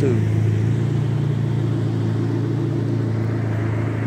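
A car engine idling, a steady low hum that does not change.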